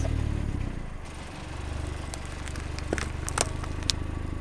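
A car engine running steadily at low speed as a tyre rolls over a row of plastic tubs. Sharp cracks come in the second half as the plastic splits and gives way.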